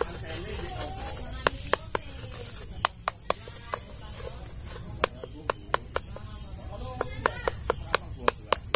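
Sharp, irregular clicks and taps of a knife working against mango tree bark, a few a second, as the trunk is scraped for an insecticide treatment against stem borers.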